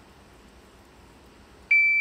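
Shot timer's start beep: a single loud, steady high tone that sounds near the end after a quiet stretch. It is the start signal for a table-start pistol drill, telling the shooter to pick up the gun and fire.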